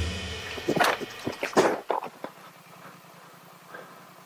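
A loaded adventure motorcycle falling over on a rocky track: a quick run of knocks and clatter as the bike and its luggage hit the stones, over a second or so, then the engine running on quietly at idle. The bike went down because the steering suddenly would not turn: a bag had dropped in and jammed the handlebar.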